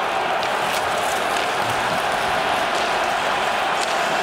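Steady crowd noise from a packed outdoor hockey stadium, with a few faint clicks from the play on the ice.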